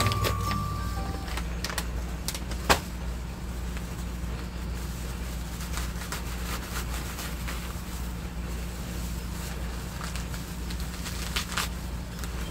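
Dry sphagnum moss rustling and crackling as hands press and shape it, with a few sharp crackles, the strongest about three seconds in, over a steady low hum.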